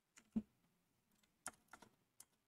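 A few faint, scattered keystrokes on a computer keyboard as code is typed, the loudest about a third of a second in, with near silence between them.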